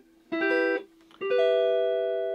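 Clean electric guitar from a Stratocaster-style instrument playing two triad chords in inversions. The first is short and cut off, about a third of a second in. The second starts just past a second in and is left ringing.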